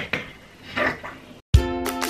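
Light handling on a sewing table: a click at the start, another just after, and a brief rustle of fabric and paper. About one and a half seconds in, upbeat instrumental background music with a steady beat cuts in abruptly and is the loudest sound.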